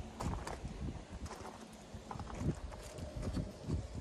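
Footsteps on loose gravel: a person walking with uneven steps.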